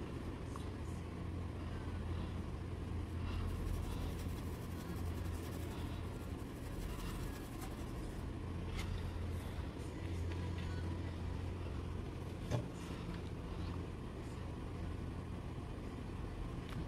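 Faint scratchy rubbing of a stiff paintbrush scrubbing paint into cloth in small circular strokes, over a steady low background hum, with one light knock about twelve seconds in.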